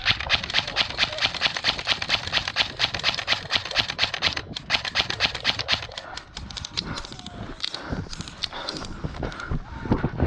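Running footsteps through dry grass with loose gear rattling at each stride, a fast rhythmic clatter that thins out after about six seconds.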